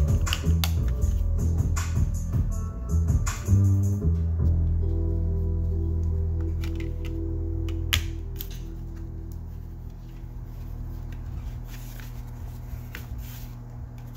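Background music with a beat that settles about four seconds in on a long held chord, fading away by about ten seconds. Under it, a sharp click about eight seconds in and faint rustles and clicks of a cardboard CD digipak and its paper booklet being handled.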